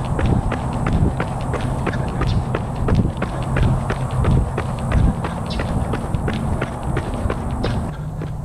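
Running footsteps: Nike Vaporfly Next% 2 running shoes striking pavement in a steady rhythm of about three strides a second, over a steady low rumble.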